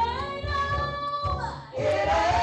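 A woman singing a gospel song into a microphone. She holds one long note that rises slightly at first and breaks off about a second and a half in, and the singing starts again near the end, over a low beat.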